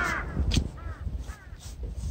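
A bird calling several times in short, harsh, arching calls, the first and loudest at the start. A sharp click comes about a quarter of the way in, over a steady low rumble.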